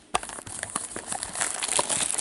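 Clear plastic shrink wrap crinkling and crackling as gloved hands pull it off a sealed hockey card box, a quick string of small crackles.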